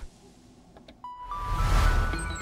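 Outro music jingle starting after about a second of quiet: a swelling whoosh with deep bass and a steady tone that steps up in pitch.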